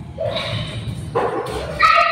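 Three short, loud pitched yelps or calls with a low rumble under them.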